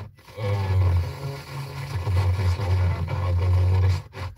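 Car FM radio tuned to a station on 96.9 MHz with no station name shown, playing broadcast audio with a strong low bass. The sound cuts out briefly at the start and again at the very end as the tuner mutes while stepping frequency.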